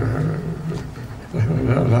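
A man's low voice over a public-address system, drawing out a hesitant 'eh' mid-speech, then falling quieter before resuming with a word near the end.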